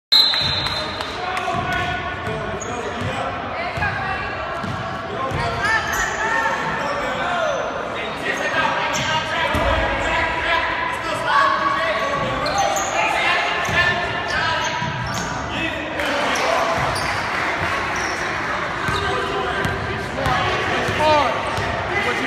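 Basketball being dribbled on a hardwood gym floor during a game, with sneakers squeaking and players and spectators shouting, all echoing in a large gymnasium.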